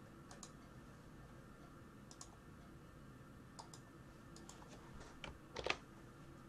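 Faint, scattered clicks of a computer mouse and keyboard being worked, some in quick pairs, the loudest near the end, over quiet room tone.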